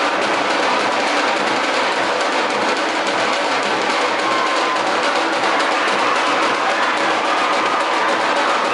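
Loud, continuous music driven by rapid drumming and percussion.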